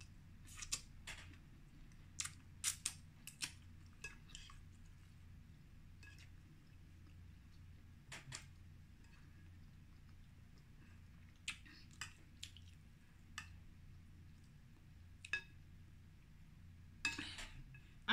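Faint, scattered clinks of a metal spoon against a large glass bowl, a dozen or so short sharp taps spread irregularly, with a quick run of them just before the end.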